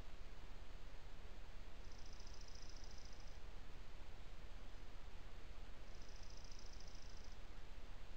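Steady hiss and low rumble from a trail camera's microphone. Twice, a few seconds apart, a high, rapid trill lasting about a second and a half cuts through it.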